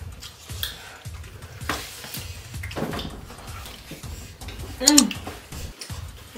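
Sounds of people eating a noodle dish: light clicks of chopsticks against ceramic plates, with a short voiced 'mm' about five seconds in.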